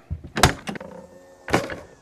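Two thumps about a second apart, the second longer, from the motorhome's entry door and its steps as a man comes out of the coach.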